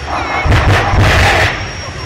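Jet dragster's jet engine running with a steady high whine, with a run of loud bangs from its afterburner from about half a second to a second and a half in.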